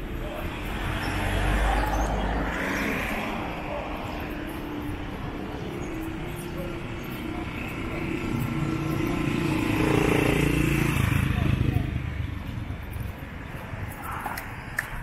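Street traffic with two motor vehicles passing close by, engines swelling and fading. The first passes about two seconds in, and a louder one passes from about eight to twelve seconds.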